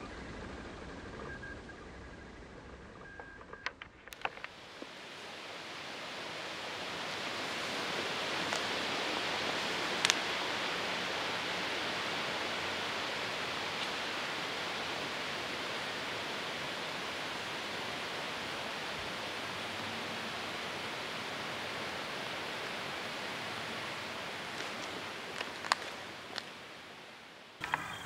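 Steady rustling hiss of wind through poplar leaves, swelling up a few seconds in and then holding, with a single sharp click near the middle.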